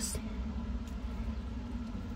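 Steady low background hum with a faint tick or two of pliers pressing a metal jump ring closed.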